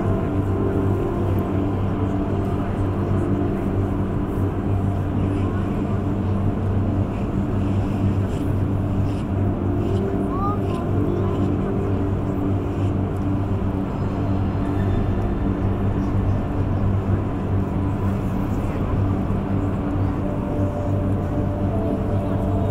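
A steady low drone with several long held tones that change slowly, like an ambient soundscape, with a murmur of voices under it.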